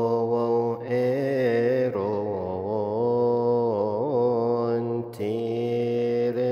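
A single male voice chanting a melismatic Coptic Easter hymn, drawing out long vowels with wavering ornaments and pausing briefly for breath three times.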